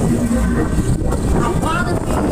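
A 1972 Pollard Twister fairground ride running at speed: a loud, steady rumble from the ride, with voices calling out over it.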